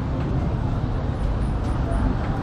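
Outdoor ambience of a busy public square: a steady low rumble with background voices, and no single sound standing out.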